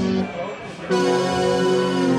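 Software synthesizer in Bitwig Studio playing sustained chord tones; the sound drops away briefly, then a new chord comes in about a second in.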